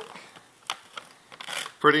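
Wrapping paper crinkling as a child handles it: a few short crackles, then a brief rustle just before a voice begins to speak.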